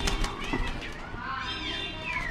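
Alexandrine parakeet calling: a few short squawking calls that rise and fall in pitch, with a sharp click right at the start.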